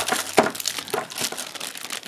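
Clear plastic zip-lock bags holding camera mounting brackets crinkling and rustling as they are handled, in irregular crackles.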